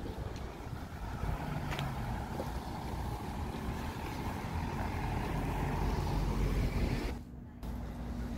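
A car driving through a street intersection, its engine and tyre noise growing louder as it approaches, then cutting off suddenly near the end.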